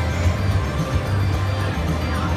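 Steady background music over the continuous din of a casino floor, with a low steady hum underneath; the slot machine being played is silent, its volume turned off.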